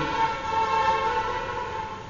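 A sustained chord-like tone, several steady pitches held together, slowly fading away.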